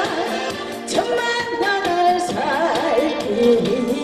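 A woman singing a Korean song into a microphone, her voice wavering with vibrato, over amplified backing music with a steady beat.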